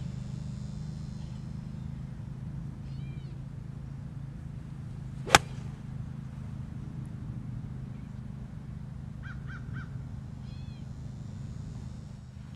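A single sharp strike of a Cleveland 900 52-degree wedge on a golf ball, a little past five seconds in, on a full approach swing. Birds call a few times in short chirping bursts, a few seconds in and again near the end.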